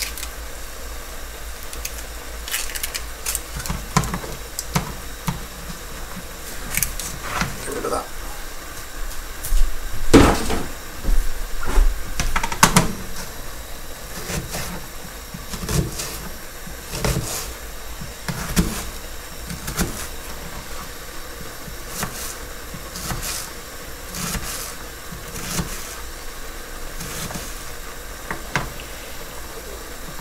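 Kitchen knife dicing an onion on a plastic chopping board: irregular sharp taps of the blade striking the board, some in quick runs, over a steady low hiss.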